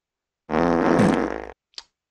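A comic fart sound effect, a buzzy sound lasting about a second that starts and stops abruptly, with a faint click after it.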